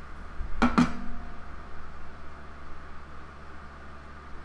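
A metal fork clinking as it is put down on the paper towel and table, with a brief ring. A steady low hum follows.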